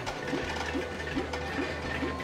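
Arcade game machines sounding: electronic game tones with short repeated notes about three a second over a steady low machine hum.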